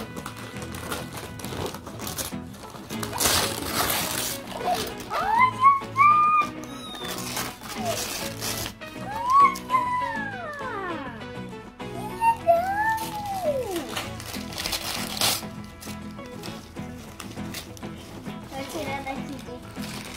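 Gift-wrapping paper being ripped and crinkled as a present is unwrapped, in several loud bursts of tearing, over steady background music. A child's voice rises and falls in a few drawn-out exclamations between the rips.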